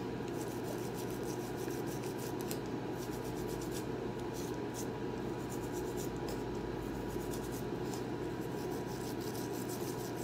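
Baby toothbrush scrubbing a small dog's teeth: quick, irregular scratchy bristle strokes over a steady room hum.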